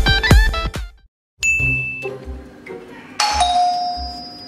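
Intro music with plucked guitar stops about a second in. After a moment of silence, an electronic doorbell chimes: a short high tone, then a lower, longer tone about two seconds later.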